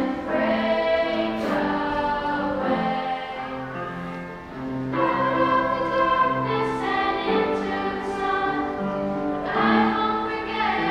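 A small group of children singing together, holding long notes. The singing eases off briefly about four seconds in.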